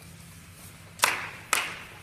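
Two sharp hand claps about half a second apart, each ringing out briefly in the echo of a gymnasium.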